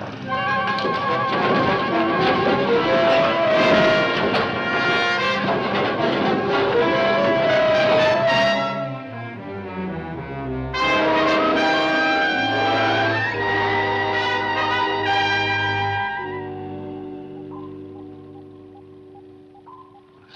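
Dramatic orchestral TV score led by brass. It plays loudly, drops away briefly about nine seconds in and swells back, then settles into held low chords that fade out near the end.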